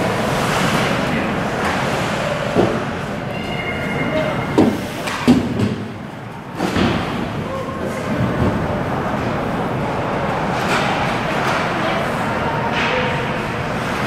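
Ice hockey play in an indoor rink: a steady wash of arena noise with several sharp knocks of sticks, puck or bodies on the boards between about three and seven seconds in, with voices mixed in.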